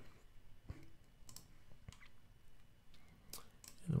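About five faint computer mouse clicks, spaced unevenly.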